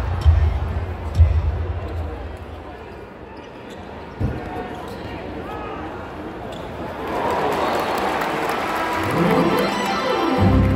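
Basketball arena sound: bass-heavy arena music fades over the first two seconds, leaving a crowd murmur with one sharp thump about four seconds in. From about seven seconds the crowd noise swells, with a rising tone near the end.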